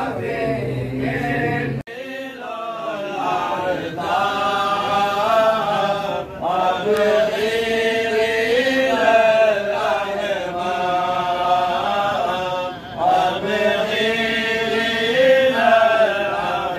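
A group of men chanting a Mawlid recitation together from their books, in slow melodic phrases that rise and fall. The sound breaks off briefly about two seconds in, then resumes.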